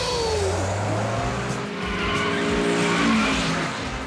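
Cartoon sound effects of racing cars: engines running and tyres squealing.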